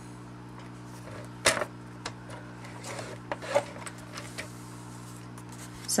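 A paper trimmer's scoring blade being run along its rail to score cardstock: a faint sliding scrape with a few light clicks and one sharper click about one and a half seconds in.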